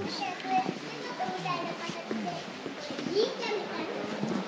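Several people's voices, children's among them, chattering and calling out in overlapping bursts.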